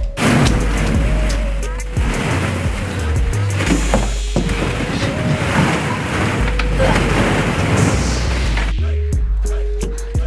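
Dense clatter and rustle of plastic ball-pit balls as a child jumps into the pit and rummages through them, dying away about a second before the end. Background music with a steady bass line plays throughout.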